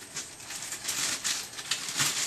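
Clear plastic bag of seeds crinkling and rustling as it is handled and twisted open, in small irregular crackles.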